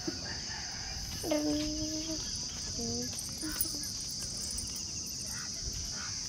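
A steady high-pitched insect chorus trilling without a break. A faint voice is heard briefly about a second in.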